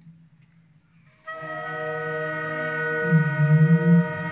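Live school orchestra of winds, strings and keyboard holding a sustained opening chord that starts about a second in. A lower, moving line comes in near the end.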